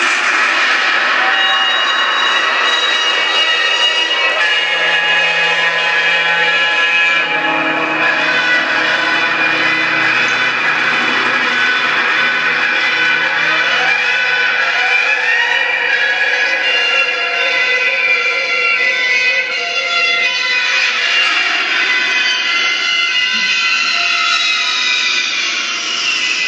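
Loud electronic soundscape from a film soundtrack played over the hall's sound system: many sustained tones layered into a swirling drone, with a pitch glide rising about halfway through.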